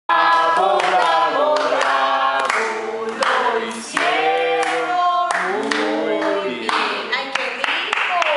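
Several women singing a song together, with hand claps mixed in.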